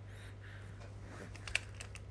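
Faint small clicks over a steady low hum: one sharp click about one and a half seconds in, then a softer one.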